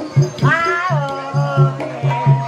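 Ebeg gamelan accompaniment with repeated low drum strokes, overlaid by a high voice that rises and then slides down in one long wail.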